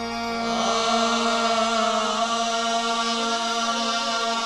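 Qawwali music: a lead voice holds a long, wavering melismatic note over a steady harmonium drone, with no drums.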